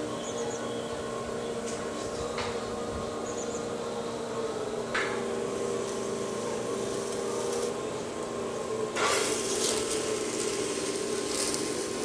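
Electric potter's wheel motor humming steadily, its pitch dropping slightly about four to five seconds in. From about nine seconds, a rough scraping of a tool and fingers against the wet clay at the base of the spinning pot.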